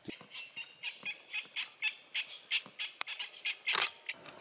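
A bird calling in a run of short, high chirps, about four a second. A single sharp click comes about three seconds in, and a louder burst near the end.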